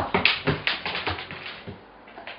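A German shepherd's claws clicking on a wooden floor as it steps around: a quick, irregular run of taps that thins out over the second half.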